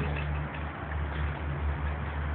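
A steady low engine hum that runs without a break, under a light haze of outdoor noise.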